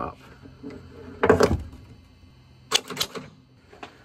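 Tesla Model Y frunk latch mechanism being worked by hand, its release cable pulled to spring the latch open: a loud metallic clack about a second and a half in, then a quick run of clicks near three seconds. The latch is stiff, partly seized with hardened, dirty grease.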